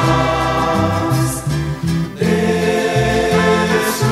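Christmas music: a choir singing over instrumental accompaniment with a moving bass line.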